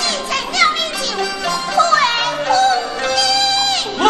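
A woman singing a Teochew opera aria in a high voice with sliding, ornamented pitch and instrumental accompaniment, holding a long note near the end.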